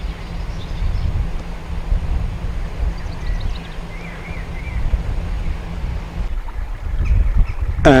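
A sailing yacht's inboard engine running steadily at low revs, with wind buffeting the microphone.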